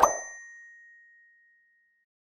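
Notification-bell sound effect: a brief whoosh swells into a single bright bell ding at the start, and its tone rings out and fades over about a second and a half.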